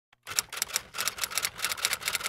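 Typewriter sound effect: a quick run of key clacks, about six a second, as letters are typed in.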